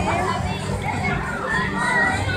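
Several children's voices chattering and calling out at once.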